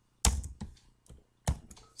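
A few separate computer keyboard key presses with quiet gaps between them; the two loudest come about a second and a quarter apart.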